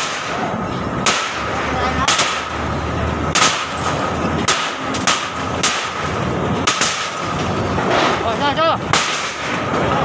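Crowbar and sledgehammer blows on a wooden-framed panel as it is broken apart: about a dozen sharp bangs at irregular intervals, roughly one a second, over steady street traffic.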